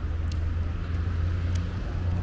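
A steady low rumble of street traffic, with a few faint short ticks.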